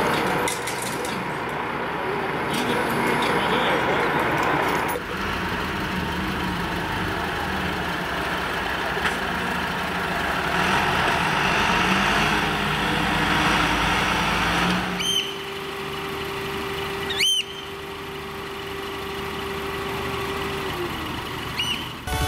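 Diesel engine of a Volvo fire engine running as the truck drives off, with voices in the background. About fifteen seconds in the sound cuts to a steady hum that drops in pitch near the end, with a brief sweeping sound in between.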